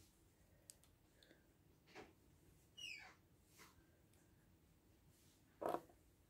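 Near silence with a few faint clicks, and one louder short knock near the end, as small gel polish striper bottles and their brush caps are handled on a wooden table.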